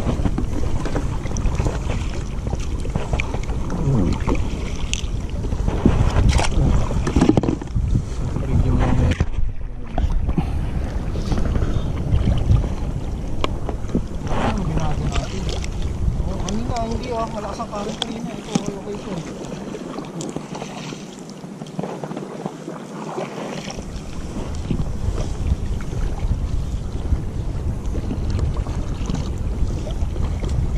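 Wind buffeting the microphone and water splashing against the side of an inflatable boat, with a few brief faint voices.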